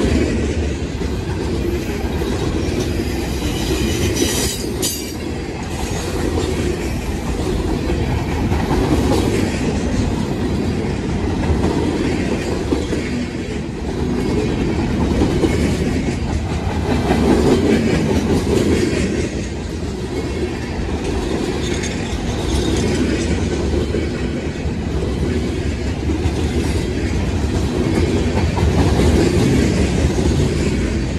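Freight train of boxcars and lumber-loaded centerbeam flatcars rolling past close by: a steady rumble and clatter of steel wheels on the rails.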